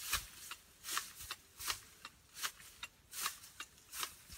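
Hand shears cutting through leafy shrub and grass stems: a crisp snip about every three-quarters of a second, six in all, with a lighter click between cuts.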